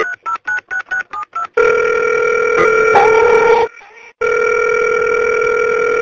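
Telephone call being placed: a quick run of about nine touch-tone keypad beeps, then the ringing tone on the line, two long rings with a short break between them.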